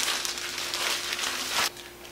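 Plastic zip-top bag crinkling and rustling as meat inside it is rubbed with dry cure by hand. The rustling stops suddenly near the end.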